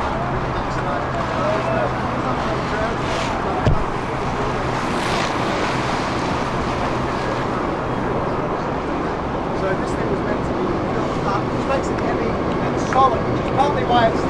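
Wind and choppy harbour water on the open deck of a tall ship under way, over the steady low hum of the ship's engine, with indistinct voices in the background. A single sharp knock comes about a quarter of the way in, and a few sharper knocks come near the end.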